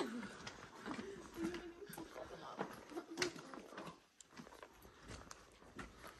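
Faint, low voices of a few people talking in short snatches, with small clicks.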